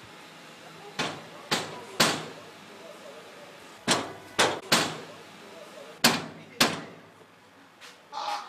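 Hard knocking on a door: three knocks, a pause, three more, another pause, then two.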